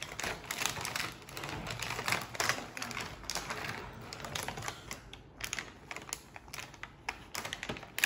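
Clear plastic packaging of a toy gun crinkling and crackling as it is handled and pulled open, a dense, irregular run of small clicks.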